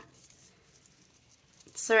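Near silence with faint rustling of paper and card as a glued panel is slid under lace trim on a journal page. A woman's voice starts near the end.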